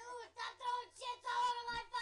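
A man's high-pitched voice: a few short vocal sounds, then one long note held for about a second near the end, sung or called out.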